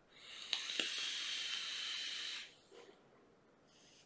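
Aspire Cleito Pro tank with a 0.5-ohm coil, fired at 75 W on the Puxos mod, being drawn on: a steady hiss of air pulled through the tank while the coil vaporises, lasting about two and a half seconds, with two small clicks in the first second.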